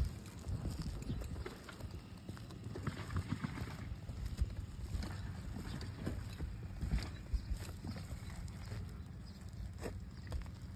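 Irregular footsteps scuffing and knocking on an asphalt-shingle roof, over a low steady rumble.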